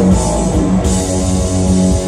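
Live black/thrash metal band playing: distorted electric guitars hold a sustained, ringing chord over drums.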